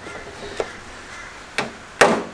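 Two short, light knocks about a second apart, the second with a brief ring, over faint background noise.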